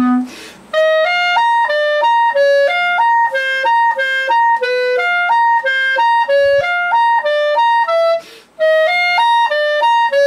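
Soprano clarinet playing a fast-figured study slowly, in short separate notes at about four a second that wind up and down in a repeating pattern. There are two brief breaks for a quick breath, about half a second in and just after eight seconds.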